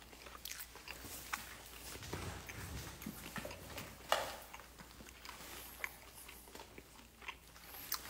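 Close-up chewing of dakgangjeong, crispy sweet fried chicken, with scattered crisp crunches; the loudest crunch comes about four seconds in.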